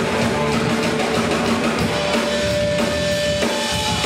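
Punk rock band playing live and loud, with pounding drum kit and electric guitar. A long held note comes in about halfway.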